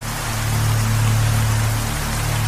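Steady rain hiss under a low, held bass drone from the background music.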